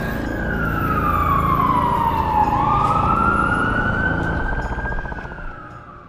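A siren wailing: one slow wail that falls in pitch for about two and a half seconds, then sweeps quickly back up and holds, over a low rumble. It fades out near the end.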